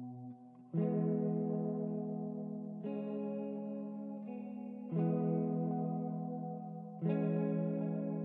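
Slow ambient music on a single clean guitar played through effects: a chord struck about every two seconds and left to ring and fade.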